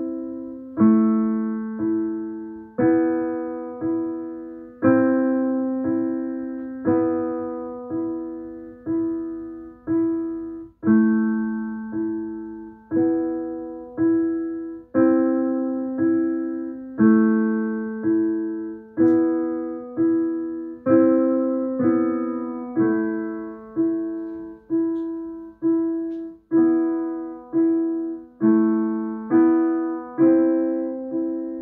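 Yamaha digital piano played at a slow, steady pace: a low repeated accompaniment figure under a simple melody, with a stronger chord struck about every two seconds.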